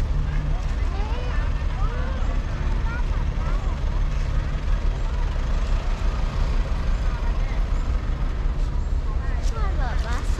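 Steady low rumble of road vehicles' engines, with faint voices of people talking.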